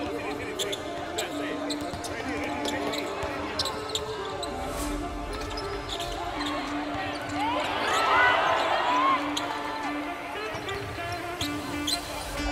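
Basketball bouncing on a hardwood court in a large hall, with sharp knocks scattered through, under a background of voices that grows busier about eight seconds in.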